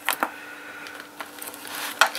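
Small metal hand tools clicking lightly as they are handled in a fabric zip-up tool case, a few separate clicks and a brief rustle near the end, over a faint steady hum.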